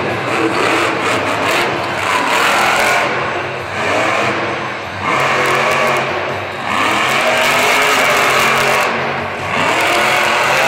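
Grave Digger monster truck's supercharged V8 engine running at full throttle, revving in repeated surges with short throttle lifts between them as the truck jumps and lands.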